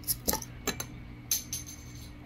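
Flat metal bottle opener prying the crown cap off a glass beer bottle: about five sharp metallic clicks and clinks.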